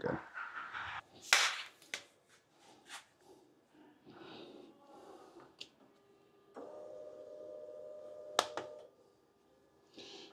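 Clicks and knocks as the motorcycle's battery terminals are reconnected, then, about two-thirds of the way through, a steady hum lasting a little over two seconds with a sharp click in it as the ignition is switched on: the Kawasaki's fuel pump priming.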